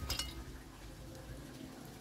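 A few light clicks of an oyster shell against a ceramic plate as the oyster is dipped in salt and lime, all within the first moment, over a low steady background.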